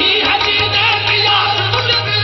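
Live qawwali music: harmoniums playing with male voices singing a wavering melody.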